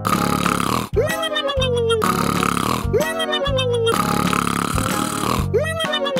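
Snoring done for comic effect: a rasping intake, then a whistle that jumps up and slides slowly down, repeated three times about two seconds apart, over background music.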